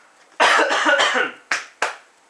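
A man coughing: one long cough about half a second in, then two short coughs near the end.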